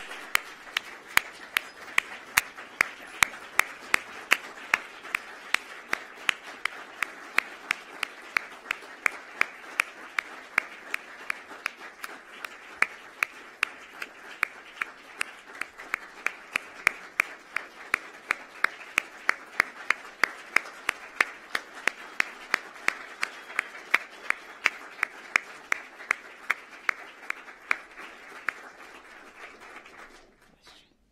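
Audience applauding, with one pair of hands close by clapping at an even beat of about two to three claps a second above the rest. The applause dies away near the end.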